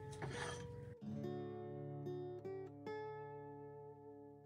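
Acoustic guitar background music: plucked notes left to ring, with new notes struck every second or so.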